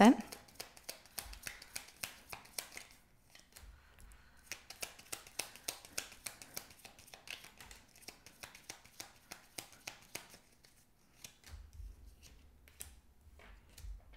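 A deck of tarot cards being shuffled by hand: quick runs of soft card clicks, with a short pause about three seconds in and only scattered clicks near the end.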